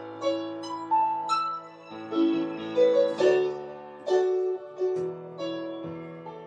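Electronic keyboard with a piano sound playing a slow song intro: held chords under a melody of single notes, a new note or chord struck about every half second to a second.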